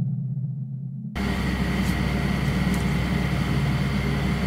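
A low, steady droning sound effect that cuts off abruptly about a second in. It gives way to the steady hiss and hum of a night-vision fixed camera's room recording.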